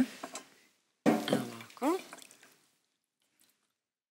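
A short spoken remark, then near silence.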